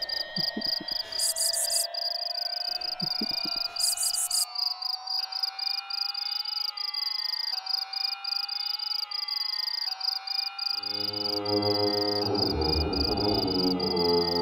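Electronic music: a steady high, fast-pulsing tone like chirring insects runs over slowly rising, repeating glides. A deep drone with many overtones comes in near the end.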